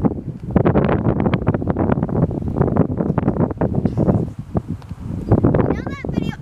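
Wind buffeting a phone's microphone: a loud, gusty rumble that rises and falls, dipping briefly about four to five seconds in.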